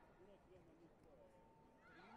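Faint indistinct voices echoing in a large sports hall, with a brief steady tone in the second half.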